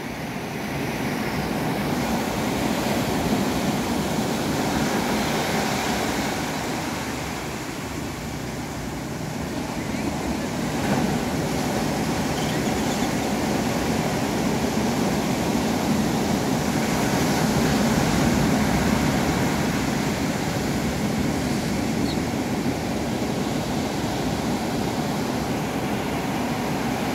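Ocean surf breaking, a steady rushing that swells and eases over several seconds.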